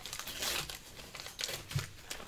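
Wax-paper wrapper of a 1981 Topps hockey card pack crinkling as it is peeled open and the cards are slid out. It comes in a few short rustles, the loudest about half a second in.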